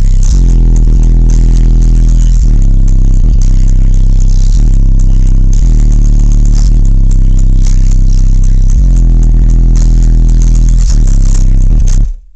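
Bass-heavy music played very loud through a car's subwoofer box of four HX2 subwoofers: deep held bass notes changing every second or two, loud enough to overload the microphone. Sharp buzzing and rattling from the car's panels rides on top of the bass.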